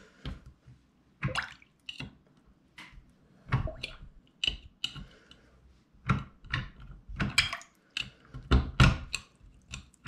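A steel butter knife prying at the pop-up drain stopper of a clogged bathroom sink under standing water: a string of irregular metal clicks and knocks with small wet splashes.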